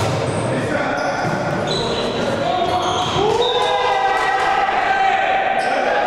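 Volleyball rally in an echoing sports hall: the ball is struck several times with sharp slaps, and sneakers squeak on the court. From about three seconds in, players shout as the point is won.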